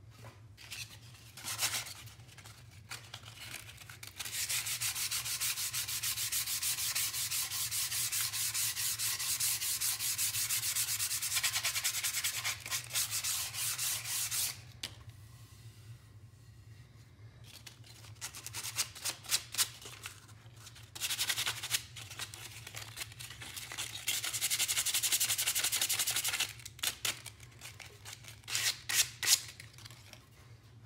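Hand sanding the edges of pine boards with a piece of 100-grit sandpaper in fast back-and-forth strokes. There are two long spells of steady sanding of about ten and five seconds, with short bursts of strokes between and after them.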